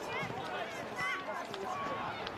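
Distant, indistinct voices of footballers calling out on an open ground, short high shouts over a steady outdoor background.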